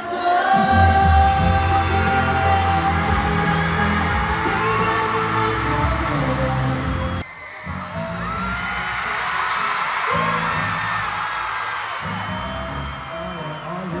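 A K-pop boy group singing into handheld microphones over a loud amplified pop backing track, heard from the arena floor. About seven seconds in, the sound cuts abruptly to a different stretch of the song.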